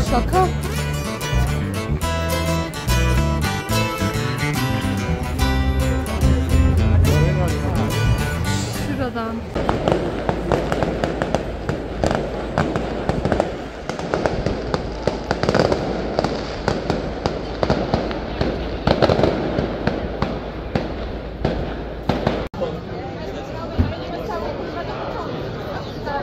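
Background music for the first nine or so seconds, then fireworks going off in the street: a rapid, irregular run of bangs and crackles that stops abruptly near the end.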